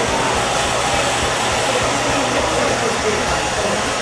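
Handheld hair dryer blowing steadily, a constant even rush of air as hair is blow-dried.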